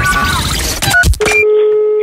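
Telephone call being placed: a brief loud burst of noise and beeps, a short dialling beep about a second in, then a steady low telephone tone lasting about a second.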